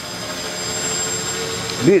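Radio-controlled helicopter flying close by: a steady whine of its motor and rotors, holding an even pitch.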